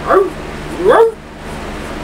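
A woman imitating a dog's bark with two short, pitched "arf" calls, one right at the start and one about a second in.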